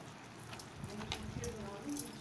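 Wooden spatula stirring simmering kootu in a stainless steel pot, with a few light, faint knocks against the pot.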